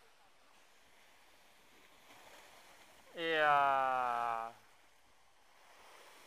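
Faint, steady wash of surf from waves breaking against a stone seawall. About three seconds in, a man lets out a single drawn-out shout of about a second and a half, falling slightly in pitch.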